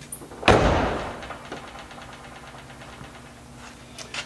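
A classic car's driver door swung shut and latching with one solid clunk about half a second in, dying away over about a second. The latch and striker have just been adjusted so the door shuts fully with little effort.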